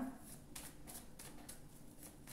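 Tarot deck being shuffled by hand: a faint, quick run of soft card flicks and rustles.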